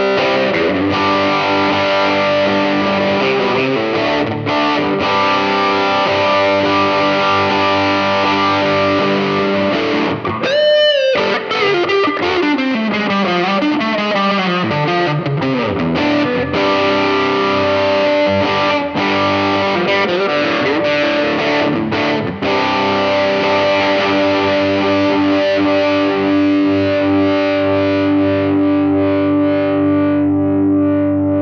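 Electric guitar, a Fender Stratocaster partscaster, played with distortion through effects pedals: lead lines and held notes. About ten seconds in a sudden high note sweeps up and then slides down in pitch over several seconds, and the last part is long held notes ringing on with great sustain.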